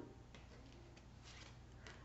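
Near silence with a few faint, soft rustles of tarot cards being picked up and handled, over a low steady room hum.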